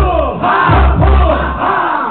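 Live hip-hop concert: shouted vocals and crowd voices calling out in unison about every half second over a beat with heavy bass kicks, loud and boomy as heard through the hall's PA.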